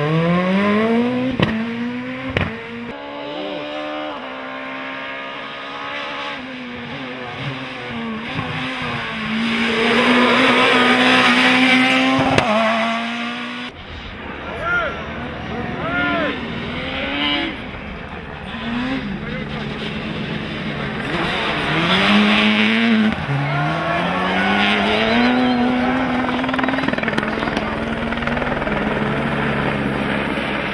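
Rally cars at full throttle: a Peugeot 207 S2000's engine climbs in pitch through the gears with brief drops at each shift. About halfway through, a second rally car follows the same pattern, accelerating, dropping at a gear change and climbing again.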